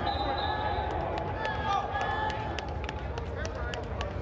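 Players' shouts and calls in a large echoing sports dome, with a string of sharp clicks from about a second in as the play gets under way, over a steady low rumble.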